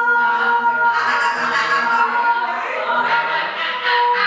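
Choir of voices holding several long, steady notes in a drone. Breathy hissing and whispering swells over it from about a second in.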